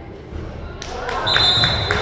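Referee's whistle: one short, steady blast of under a second, near the end, over gym voices and a few knocks of the basketball on the hardwood floor.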